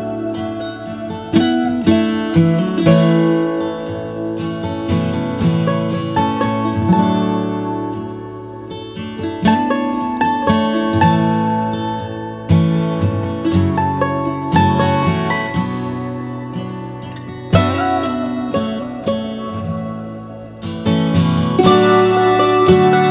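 Instrumental acoustic guitar music: picked guitar notes ringing and fading, with a few sharper, louder strummed accents.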